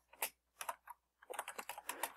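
Keystrokes on a computer keyboard: a few separate taps, then a quick run of keystrokes in the second half, as "weak self" is typed into code.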